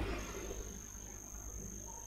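A steady high-pitched whine, with a fainter tone about an octave above it, sets in just after the start over faint low hum and room tone.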